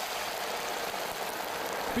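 Cockroaches deep-frying in hot peanut oil in a wok: a steady sizzle of bubbling oil.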